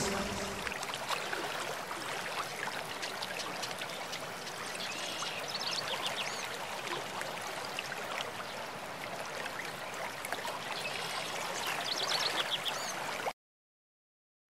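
Steady rush of running water, like a flowing stream, with a few high chirps over it; it cuts off suddenly near the end.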